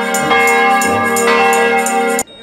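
Bronze bells of a mobile carillon played from its baton keyboard: a quick succession of struck notes, each ringing on under the next.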